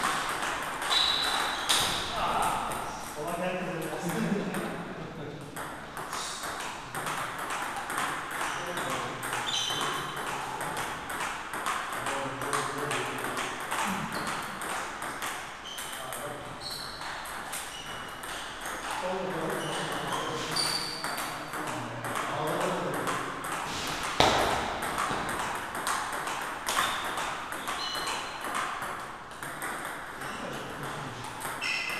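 Table tennis rallies: the plastic ball clicking off the paddles and bouncing on the table in quick back-and-forth exchanges, with one sharp louder hit about 24 seconds in. Ball clicks from other tables in the hall mix in.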